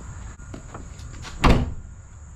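The driver's door of a 2003 Chevrolet Silverado pickup being shut, with one solid thud about one and a half seconds in.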